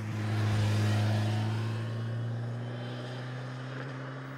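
Motorcycle engine running steadily as the bike passes close by, loudest about a second in and then slowly fading as it rides away.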